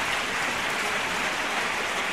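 Steady, even hiss-like noise, like rain or running water, with no voice or music.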